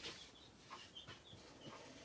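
Near silence, with a few faint short squeaks of a black felt-tip marker drawing lines on paper.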